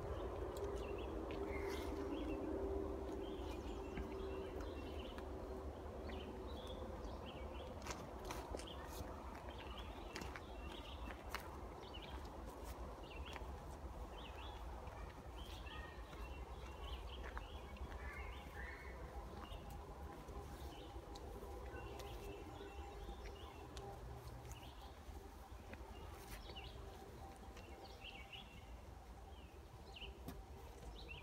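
Footsteps of people walking a woodland trail through brush, with birds chirping throughout.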